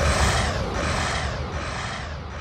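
Electronic trap music: a hissing, jet-like synth wash that swells and fades roughly every three quarters of a second over a low bass, the whole dying away.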